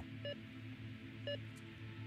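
Heart monitor giving two short electronic beeps about a second apart, one beep per heartbeat, in step with a pulse in the mid-60s. A faint steady music bed plays underneath.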